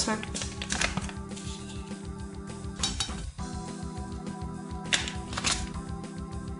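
Steady background music, with a few brief rustles, about a second in, near three seconds and twice near five seconds, as spice seasoning is shaken onto raw eggs in a plate.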